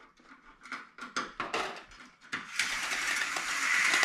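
Vertical window blinds being pulled open by their cord: plastic slats clicking and clattering as they turn, then, about two and a half seconds in, a steady rattling rush as the slats slide together along the headrail.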